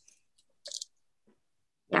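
A brief soft crunch with a couple of faint ticks as the wooden pieces of a walking-dinosaur kit are handled and pressed together.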